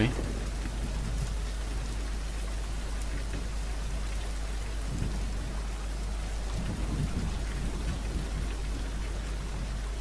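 Steady hiss-like background noise with a constant low hum underneath, the recording's noise floor between spoken steps.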